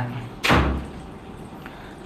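A single short thump about half a second in, dying away quickly.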